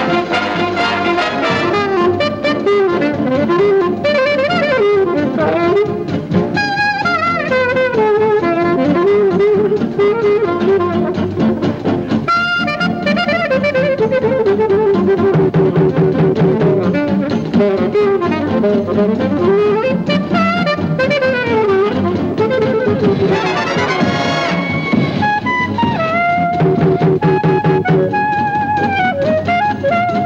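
Swing big-band music for jitterbug dancing, with saxophones, trumpets and trombones playing over a steady beat. Around twenty-four seconds in, the band plays a fast rising run to a high peak.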